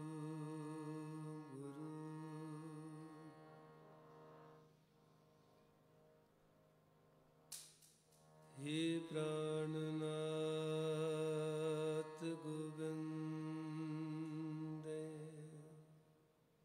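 A male kirtan singer's voice holding long wordless notes with a slight waver, in the style of a sung alaap. The first note fades out about four seconds in; after a quiet stretch and a sharp click, a new note slides up into place and is held until it fades near the end.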